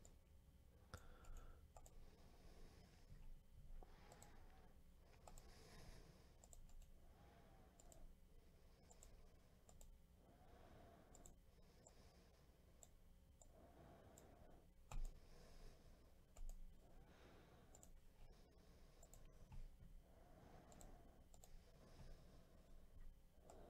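Faint, scattered clicks of a computer mouse over near silence, a few a little louder than the rest.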